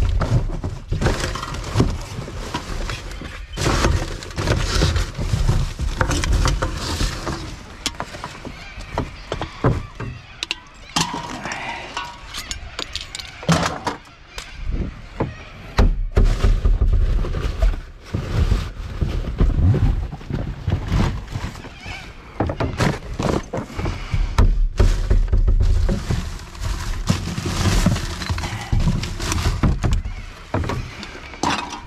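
Rubbish being rummaged through by hand in a plastic wheelie bin: plastic bags, paper and cardboard rustling and crinkling, with frequent knocks and clicks against the bin. Bursts of low rumble come and go throughout.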